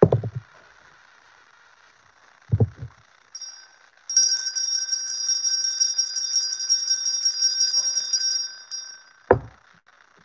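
Small brass hand bell shaken, giving a short ring about three seconds in, then rapid continuous ringing for about four seconds before it stops. Dull thumps sound at the very start, about two and a half seconds in, and near the end.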